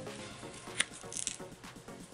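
Paper flaps of a handmade journal being opened and handled: light paper rustling and a sharp click a little before one second in, over faint background music.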